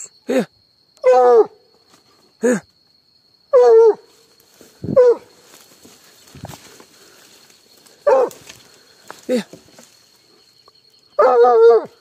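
Hunting dog barking over and over, about nine short barks each dropping in pitch, a second or so apart, with a longer one near the end. It is baying at an animal holed up in a brush pile.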